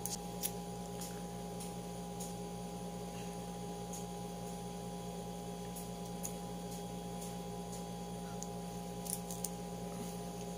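Steady low electrical hum, with a few faint scattered clicks and taps from handling a lip tint tube.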